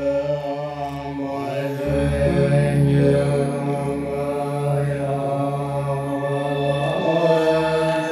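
Tibetan Buddhist lamas chanting a prayer in low, sustained voices over a musical accompaniment with a pulsing low drone; the sound swells slightly about two seconds in.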